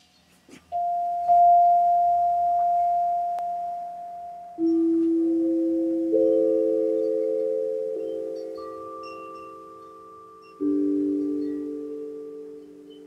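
Meditation music of slow, struck bell-like chime tones: about seven notes at different pitches, beginning under a second in, each starting suddenly and ringing on as it slowly fades, so they overlap into a soft chord.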